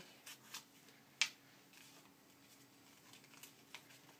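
Faint handling of a sheet of paper against fabric while it is being pinned: a few soft rustles and light clicks, the sharpest about a second in.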